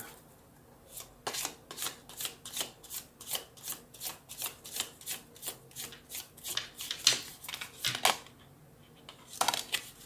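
A deck of round oracle cards being shuffled by hand: a quick run of soft shuffling strokes, about three a second, then a short pause and one more brief rustle near the end.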